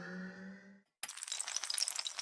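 Intro sound effects: a rising synthesized tone fades out within the first second. After a brief gap comes a dense crackling clatter of many small sharp clicks.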